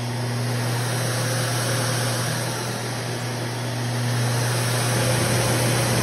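A professional pet blower dryer running, its motor and fan giving a steady rushing air noise over a low hum. It gets louder about a second in and again near the end as its speed control is turned.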